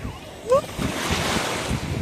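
Small waves washing up over a sandy shore, the wash swelling about a second in, with wind buffeting the microphone. A short rising squeak about half a second in is the loudest moment.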